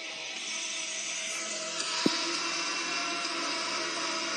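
Steady mechanical whirring, like a small electric motor, with a hum underneath and a single sharp click about two seconds in.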